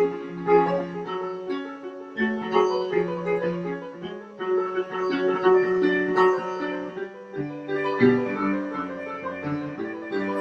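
Solo piano playing classical music, a quick succession of overlapping notes.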